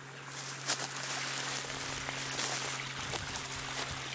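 Spring water running over rocks in a small creek bed, a steady rush with no break.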